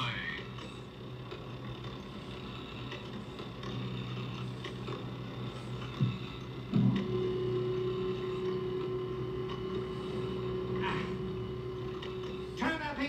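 Steady low electronic hum. A knock comes about six seconds in and another soon after, and then a steady higher tone joins the hum.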